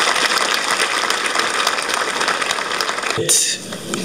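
Crowd applauding: a dense, steady patter of many hands clapping that dies away a little after three seconds in.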